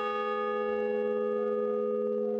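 A large hanging bell ringing on from a single strike: several steady tones hum together, the upper overtones slowly fading while the low ones hold.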